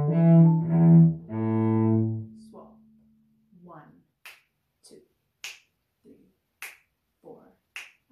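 Cello played with the bow: a short phrase of sustained low notes that stops about two seconds in and rings off. Then come four crisp finger snaps, spaced a little over a second apart.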